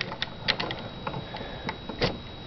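Small hard-plastic clicks and taps from a Transformers Animated Swindle toy's cannon being handled by fingers: a handful of scattered, irregular clicks.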